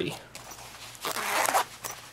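A zipper on a small knife case pulled open in one rasp of about half a second, followed by a short click.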